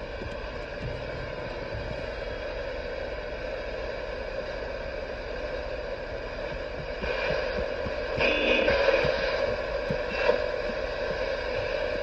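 CB radio receiver hissing with static between transmissions, opening with a click; the hiss gets a little louder about seven seconds in.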